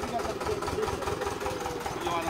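A water-well drilling rig's engine running steadily at idle, with an even low pulse from its firing strokes.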